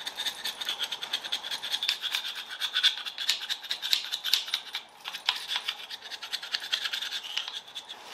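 Hand chisel scraping old gasket residue off the metal face of an engine block's end plate in rapid, rough strokes, several a second, with a brief pause about five seconds in.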